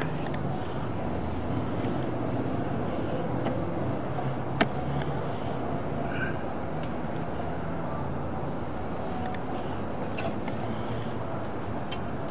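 Steady low mechanical rumble with a few light clicks, and one sharp click about four and a half seconds in.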